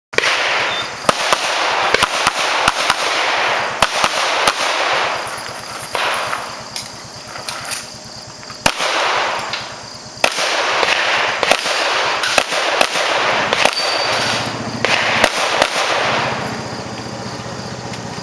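Pistol fired in rapid strings of shots, with a short lull in the middle, the shots stopping about two seconds before the end.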